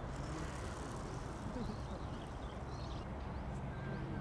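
Steady background rumble and hiss with faint voices in it.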